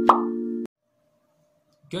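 Logo sting: a bell-like mallet-percussion chord ringing, with a short pop about a tenth of a second in; the chord cuts off suddenly well before the first second is out.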